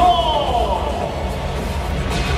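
Stadium PA announcer drawing out a player's name in one long call that falls in pitch, over loud lineup-introduction music with a steady bass beat.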